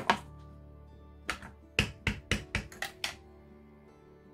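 Clear acrylic stamp block tapped repeatedly onto an ink pad to ink a rubber sentiment stamp: one tap at the start, then a quick run of about seven light taps between one and three seconds in, over soft background music.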